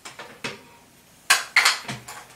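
A few short clicks and clatters of hard plastic hair tools being handled as a comb is put down and a curling iron is picked up. The loudest clatter comes about one and a half seconds in.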